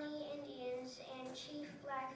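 A boy's voice through a microphone, drawn out in held, sing-song notes.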